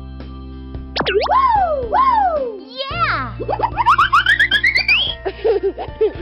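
Cartoon soundtrack: a steady musical backing under comic sound effects. About a second in come two swooping up-and-down pitch slides, then a falling slide, then a rising run of chirps. A childlike cartoon voice babbles near the end.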